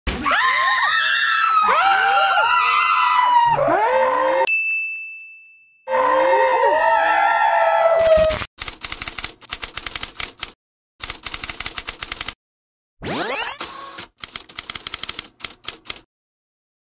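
High, warbling melodic tones that break off after about four seconds, leaving a single high ringing tone, then start again. From about halfway, stuttering digital glitch and static sound effects cut in and out, with a rising whoosh a little before the end.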